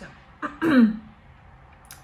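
A woman clearing her throat once, a short, loud sound falling in pitch about half a second in.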